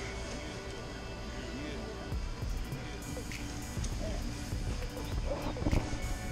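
Music and voices from a television playing in the room, with a few light knocks near the end.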